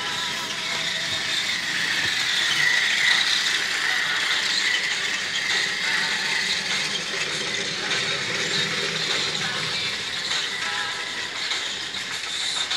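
Motorized Thomas & Friends Percy toy train running on plastic track, its motor and gears whirring and rattling, loudest about three seconds in.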